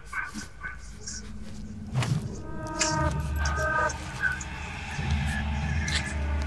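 Suspense film score: a low, pulsing drone with held tones swelling in over the second half, building tension, with a single sharp click about two seconds in.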